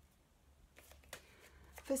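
Oracle cards being shuffled and handled in the hands: a few soft, quick flicks and rustles in the second half.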